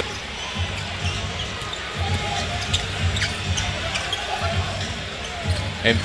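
A basketball being dribbled on a hardwood court, thumping about twice a second, over the murmur of an arena crowd.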